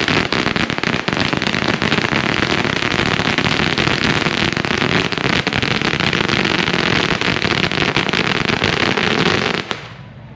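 A long string of red firecrackers going off in a rapid, continuous stream of sharp pops, which stops abruptly shortly before the end.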